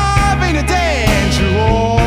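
Live blues-rock band playing: semi-hollow electric guitar, electric bass and drum kit, with a melody line that slides and bends in pitch over a steady low groove.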